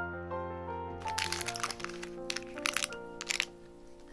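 A pizza cutter wheel rolling through the crisp crust of a homemade pizza on parchment paper, giving irregular crackling crunches for a couple of seconds, starting about a second in, over soft piano background music.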